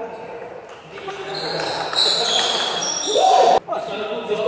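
Table tennis rally: the celluloid ball knocking off the table and the rubber paddles, with voices in a large hall. The sound cuts out for a split second near the end.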